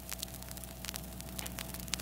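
Surface noise of a 1938 aluminum-based lacquer disc field recording: a steady hiss and low hum with many scattered clicks and crackles.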